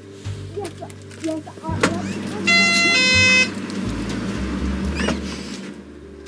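An electronic two-note shop-door chime, a ding-dong with the second note lower, rings about halfway through as the shop door is pushed open, just after a couple of clicks from the door, over background music.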